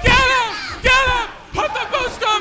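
Loud, high-pitched shouting: two long, falling yells in the first second or so, then shorter cries near the end, over crowd noise.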